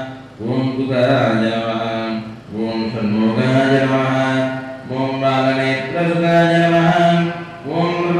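A man's voice chanting mantras in long, held, level-pitched phrases with brief pauses for breath, as part of a Hindu temple puja to Murugan.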